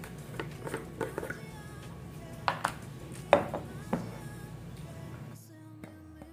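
Background music with a scattering of sharp clicks and knocks, the loudest about three seconds in, as a plastic spice jar's cap is unscrewed and the jar handled.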